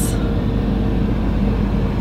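2014 Toyota RAV4's 2.5-litre four-cylinder engine idling, heard from inside the cabin as a steady hum.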